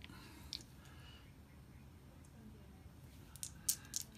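Faint clicks from handling Strat-O-Matic game cards and dice on a tabletop: one click about half a second in, then several sharper clicks close together near the end.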